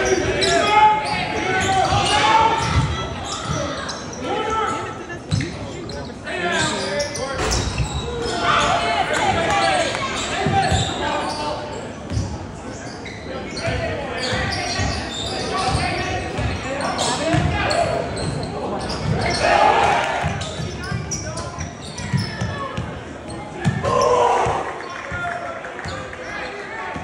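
A basketball bouncing on a hardwood gym court, repeated thuds through the play, with indistinct shouts from players and spectators in a large gym.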